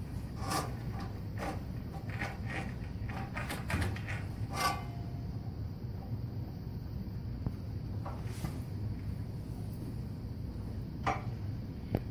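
Electric drum sewer snake running with a low steady hum while its cable is fed into a clogged sewer line, with irregular clicks and knocks from the cable and drum.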